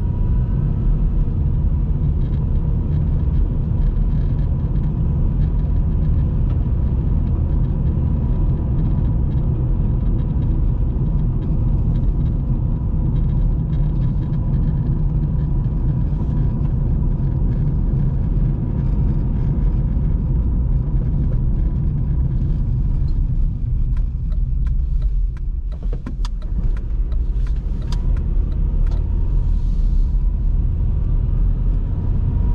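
Steady low rumble of a car's engine and tyre noise heard from inside the cabin while driving on a paved road, with a few light clicks near the end.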